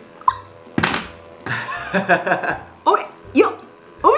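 A pocket thermal printer starting a print: a knock just under a second in, then its small paper-feed motor whirring steadily as the thermal paper feeds out, with short laughs over it.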